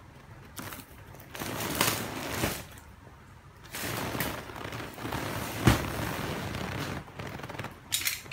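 Clear plastic wrapping of a latex mattress topper crinkling and crackling as it is handled and pulled open, in two long stretches with one sharp snap in the middle of the second.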